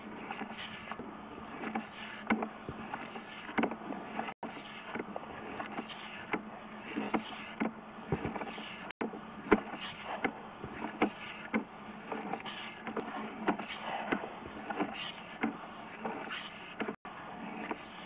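Sewer inspection camera's push cable being pulled back out of the drain line: faint, irregular scraping and clicking strokes, roughly one every half second to second.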